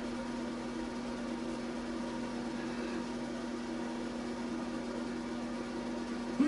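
A steady hum with a constant low tone over an even hiss, unchanging throughout.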